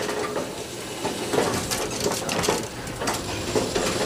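Bowling pins and the pinsetter clattering after a throw: a run of scattered knocks and rattles.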